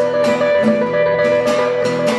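Two acoustic guitars playing a country instrumental passage: steady strumming, about four strokes a second, under long held notes.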